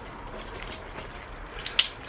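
Faint handling noise as a pair of e-bike brake levers with cut-off sensor cables is lifted from its packaging, with one short click near the end.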